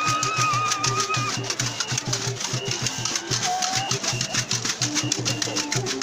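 Fast, even beating of calabashes and drums for an Acholi larakaraka dance, about seven or eight strokes a second. A long, high whistle-like note is held over the first second or so, followed by scattered short calls.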